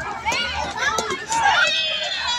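Children talking and calling out in high voices.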